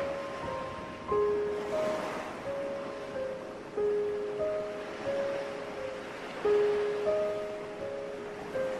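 Slow, calm keyboard music of single held notes, a new note every second or so, each fading away, laid over the steady wash of ocean surf, which swells about two seconds in.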